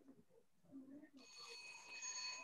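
A faint electronic ringing tone, several steady high pitches held together over a hiss, starts a little over a second in and keeps sounding.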